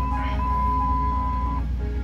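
Jeep Grand Cherokee WJ engine idling steadily, a low hum heard from inside the cabin. Over it runs soft background music with a held flute-like note that shifts pitch slightly about a third of a second in and stops near the end.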